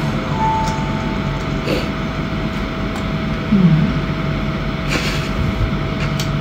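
Steady background hiss and hum with a faint steady tone running under it, and a short hummed voice sound about three and a half seconds in.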